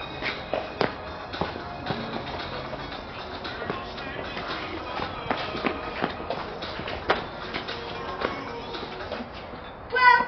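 Background music with short pitched notes and frequent sharp beats.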